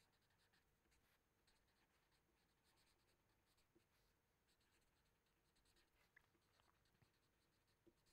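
Near silence, with the faint scratch of a felt-tip marker writing words on paper in short strokes.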